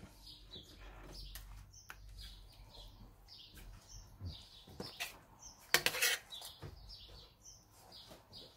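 Creamed beef being served from a pan onto a plate: a few sharp clinks of the pan and utensil, with soft wet sliding of the sauce. Faint bird chirps sound repeatedly in the background.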